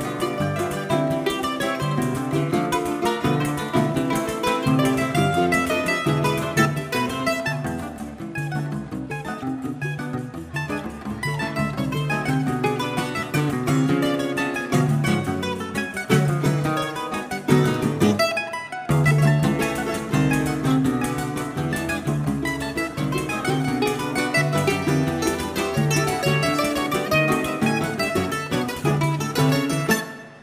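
A live choro played on a bandolim (Brazilian mandolin) leading over acoustic guitar accompaniment. The bass drops out briefly a little past the middle, and the piece ends at the very close.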